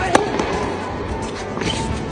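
A tennis ball struck once by a Babolat Pure Aero 2023 racket, a single sharp crack just after the start, over background music.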